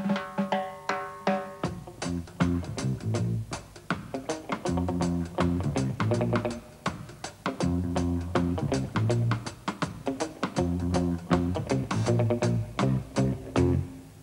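Electric guitar playing a heavily right-hand-damped (palm-muted) melodic riff in short, clipped, percussive notes, in the rocksteady style, close to the bass line but more elaborate. A bass guitar plays the riff low underneath, loudest from about two seconds in.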